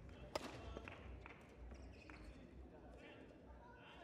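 Near silence of a large sports hall: faint distant voices, with one sharp knock about a third of a second in.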